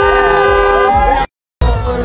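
A car horn sounding one held blast of about a second over crowd voices. The sound then cuts out briefly and comes back as loud party music with a heavy bass beat.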